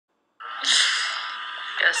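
A person's voice: after a brief silence, a sudden loud breathy vocal burst, followed by a lingering hiss and hum. A voice begins with "Well, I" near the end.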